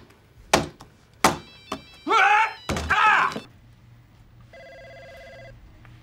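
A few sharp knocks, then a loud high-pitched vocal cry, then a desk telephone's electronic ringer sounding one steady ring of about a second near the end.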